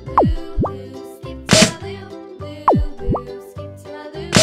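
Cartoon sound effects over upbeat children's background music: twice, a fast falling pitch glide followed by a quick rising one, plop-like, and a single sharp shot-like bang about one and a half seconds in.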